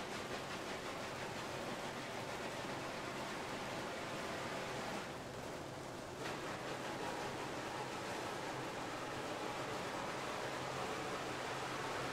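Snare drums played with the bare hands, rubbed or rolled on the heads, giving a dense, steady hiss-like rustle. About five seconds in, the bright top of the sound drops away for a little over a second, then returns.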